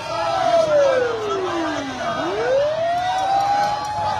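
Vehicle siren: one wailing tone that falls slowly for about two seconds, then sweeps quickly back up and holds high, over crowd noise.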